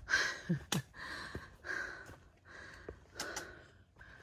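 A hiker breathing hard from climbing a steep, rocky trail: a quick series of puffing breaths, with a few light clicks of footsteps on rock.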